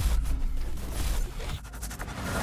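Digital glitch transition sound effect: a low thump, then stuttering, crackling noise that thins out near the end, breaking off the background music.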